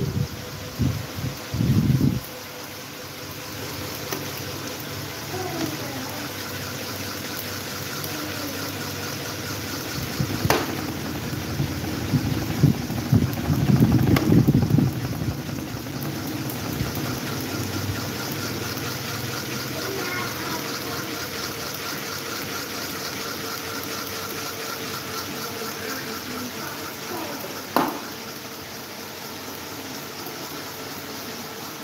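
Several electric pedestal and desk fans running at once: a steady rush of air over a constant motor hum, with louder low rumbles near the start and around the middle and a couple of sharp clicks.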